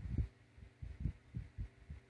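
Muffled, closed-mouth coughing: a run of soft, low thumps, about eight in two seconds, unevenly spaced.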